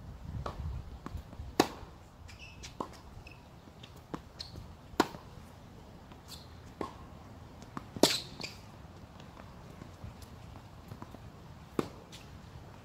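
Tennis rally on a hard court: sharp pops of racquet strings striking the ball about every three to four seconds, with fainter clicks of the ball bouncing between them.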